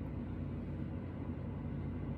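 Steady low background hum of room tone, with no distinct sound events.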